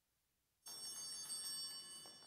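A small bell rings with a sudden start about half a second in, bright and high-pitched, holding steady before it begins to fade near the end: the signal that Mass is beginning.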